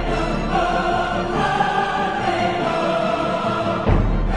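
Music with sustained, choir-like voices holding long notes, and a loud drum hit just before the end.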